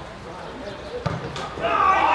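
A football struck with a dull thump about a second in, then loud shouting voices of players on the pitch.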